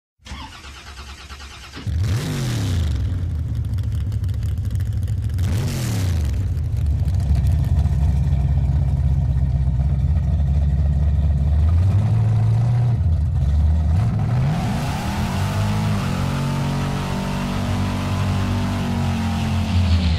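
A car engine revving: after a faint low hum, it sweeps up and down in pitch about two seconds in and again about six seconds in. It then holds a loud, steady low drone and climbs in pitch once more near the three-quarter mark.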